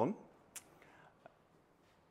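A man's voice trailing off at the start, then quiet room tone with one faint click about half a second in.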